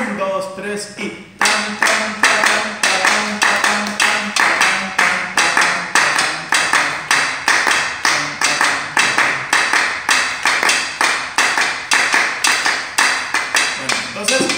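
Drumsticks striking drums in a steady, even rhythm of about three to four strokes a second, after a brief spoken "tan, tan" at the very start.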